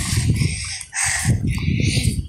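Wind buffeting the phone's microphone, a rough low rumble that drops out briefly just before a second in. A short higher-pitched sound cuts through about a second in.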